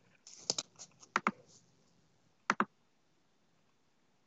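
Computer mouse clicks: three quick pairs of sharp clicks in the first three seconds or so.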